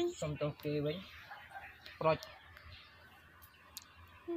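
Short bits of speech in the first second and a brief vocal sound about two seconds in, then a quiet stretch with a few faint clicks.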